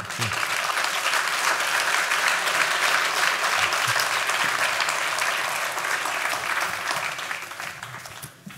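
Audience applauding: dense clapping that starts at once, holds steady and fades out near the end.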